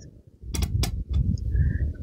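A few sharp clicks and clinks of kitchen utensils about half a second in, as a metal spoon and a glass mixing bowl with a whisk in it are handled over a stainless steel bowl of flour, with low handling rumble and a brief faint high note near the end.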